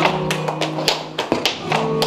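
Live flamenco: sharp hand claps (palmas) and taps in a quick, uneven rhythm over a flamenco guitar.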